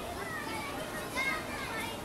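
Children's voices: high-pitched chatter and calls, with one louder call just over a second in.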